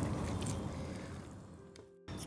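A spoon stirring thick, creamy gravy with chicken pieces in a pan, squelching and scraping against the metal. It fades out over the last second.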